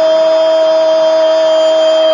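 A loud, steady tone held at one unchanging pitch with overtones, like a horn or buzzer.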